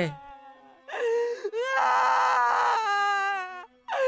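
Two drawn-out wailing cries, the second longer and louder with a rough, strained middle, over a low steady drone: a sound effect under the horror narration.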